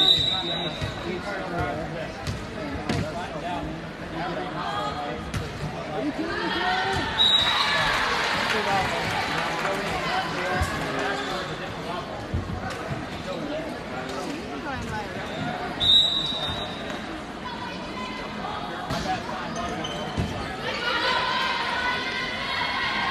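Gym crowd chatter and calls during a volleyball match, with short referee whistle blasts at the start, about seven seconds in and about sixteen seconds in. Scattered thuds of the volleyball being bounced on the hardwood floor and struck run through it.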